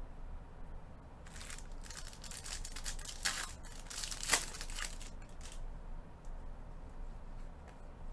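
Foil-wrapped trading-card pack being torn open, with its wrapper crinkling: a run of rips and crackles from about a second in until about five and a half seconds in, the sharpest rip near four seconds in.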